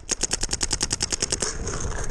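Paintball marker firing a rapid burst of about twenty evenly spaced shots in just over a second, then stopping.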